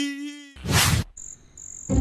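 A held vocal hum ends about half a second in, followed by a short burst of noise. Then a steady, high-pitched cricket chirr with one brief break.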